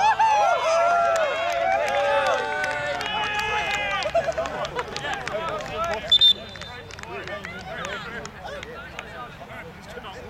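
Players shouting across a football pitch, then one short, loud blast of a referee's whistle about six seconds in.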